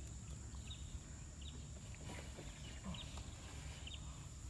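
Faint riverside ambience: a steady high insect drone with a few short, high bird chirps scattered through it, over a low steady rumble.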